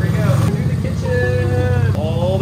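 Red mini Jeep's motor running steadily as the little vehicle drives indoors, a loud, even low drone.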